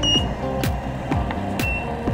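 Two short high electronic beeps from an Interfit Honeybadger studio strobe's control panel as its beep button is worked, one right at the start and one near the end. Background music with a steady beat runs underneath.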